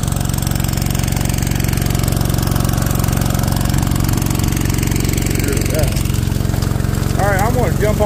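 Small gasoline engine of a gold suction dredge running steadily at a constant speed, driving the dredge's water pump.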